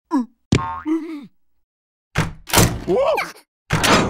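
Cartoon sound effects: a sharp hit with a springy, wobbling boing about half a second in, then louder noisy clattering with a rising-and-falling squeal, and another loud hit near the end.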